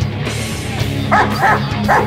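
A police K9 dog barking three times in quick succession in the second half, over loud rock music.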